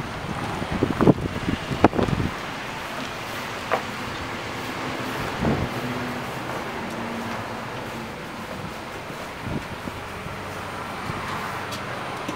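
Wind on the microphone: a steady rushing noise, with a few sharp knocks and thumps in the first two seconds.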